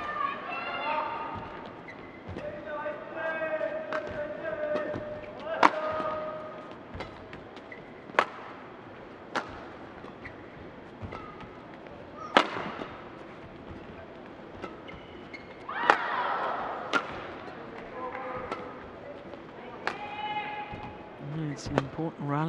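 A long badminton rally: rackets strike the shuttlecock with sharp cracks, one every one to three seconds, over voices in the hall.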